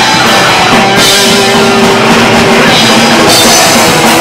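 Punk rock band playing live: distorted electric guitars and bass over a full drum kit, loud and steady, with no singing.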